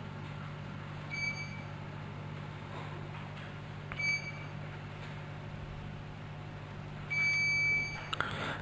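Electronic voting system beeping in a council chamber: two short high beeps about three seconds apart, then a longer beep near the end as the vote closes, over a steady low hum.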